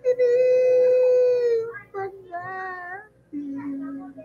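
A solo voice singing an old Visayan song karaoke-style in long, wavering held notes. A loud high note lasts about a second and a half, then come shorter notes, and a lower note is held near the end.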